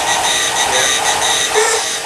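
Several battery-operated tin toy robots running at once: a steady mechanical whirring and grinding of their motors and gears, with an electronic sound that pulses about two to three times a second.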